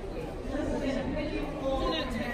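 People talking and chattering, with voices growing louder about half a second in, over a low steady background rumble.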